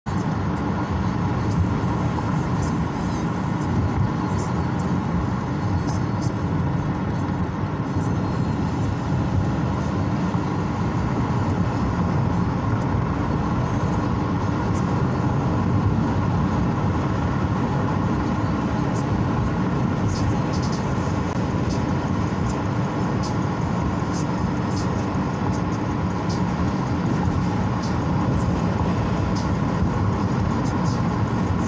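Steady road noise inside a moving car: tyres and engine running at an even cruising speed, a low rumble with a few faint light ticks above it.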